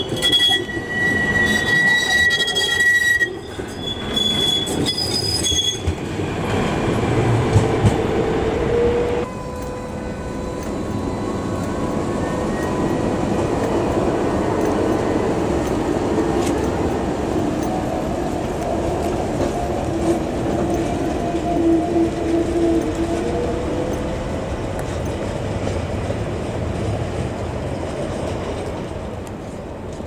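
Trams rolling past close by on street track, among them an older Ganz KCSV6 articulated tram: high wheel squeals in the first three seconds, then a lower whine that rises and wavers through the middle, over a steady rolling rumble that fades towards the end as the tram moves away.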